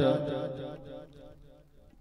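A man's voice through a microphone holding out the final vowel of an intoned, chant-like honorific call, one steady pitch that fades away over about a second and a half.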